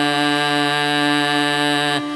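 Male Carnatic vocalist holding one long, steady note with no ornamentation, the pitch dead level.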